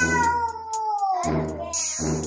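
A long, drawn-out meow-like cry that falls slowly in pitch, over background music with a steady beat.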